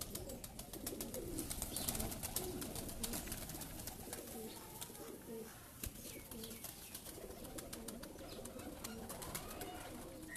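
Domestic pigeons cooing throughout, a low wavering murmur of several birds, mixed with many sharp clicks and rustles that are densest in the first few seconds.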